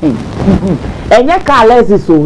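A woman laughing loudly: breathy, noisy laughter for about the first second, then voiced laughter.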